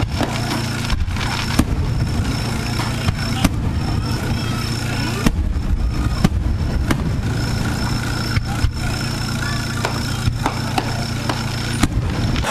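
Aerial fireworks bursting and crackling as sharp, irregular bangs, over a steady low engine hum.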